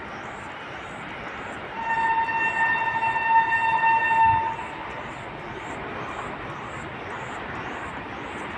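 Train horn sounding one long, steady blast of about two and a half seconds, starting about two seconds in. Under it runs a steady outdoor hiss, with a faint high chirp repeating about twice a second.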